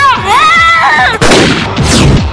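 A boy shouts a long, high call. About a second in, a loud burst of film gunfire sound effect cuts in suddenly and keeps going.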